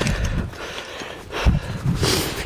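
Footsteps on grass and camera handling as the camera is carried, heard as a few dull thumps, one near the start and a couple about a second and a half in.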